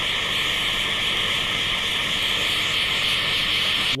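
Kitchen Craft cook's butane blowtorch burning with a steady hiss as its flame caramelises the sugar topping of a crème brûlée.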